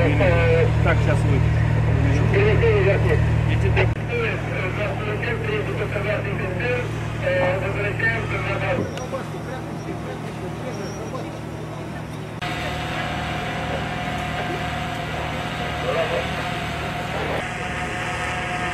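An engine running steadily under people's voices. Its sound changes abruptly about four, nine and twelve seconds in, and a steady higher whine joins it in the second half.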